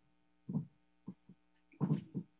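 Steady electrical hum, broken by four short, low vocal sounds: soft chuckles.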